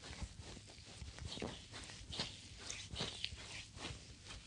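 Oiled hands kneading and rubbing a bare foot, skin sliding and pressing on skin in soft, irregular rubs and brushes, picked up close to the foot.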